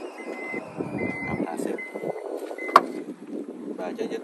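Toyota Fortuner's power tailgate closing. Its warning beeper sounds at one steady pitch a little more than once a second while the door moves, then a single sharp latching clunk, the loudest sound, comes nearly three seconds in as the beeping stops.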